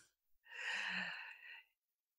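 A person's soft breath or sigh into a podcast microphone, lasting under a second, about half a second in.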